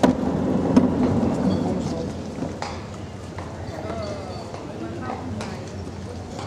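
A coffin sliding into the bed of a horse-drawn hearse: a knock, then a rumbling scrape of about two seconds, after which the sound settles. Crowd voices murmur throughout.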